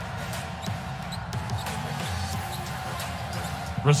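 Basketball game sound on a hardwood court: the ball bouncing, with short sharp clicks of play, over faint background music.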